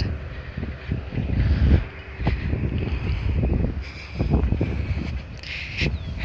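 Wind buffeting a phone's microphone in uneven low rumbling gusts.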